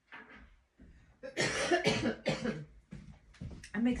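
A woman coughing several times in quick succession, each cough a short, harsh burst, with a few fainter coughs or throat-clearings around them.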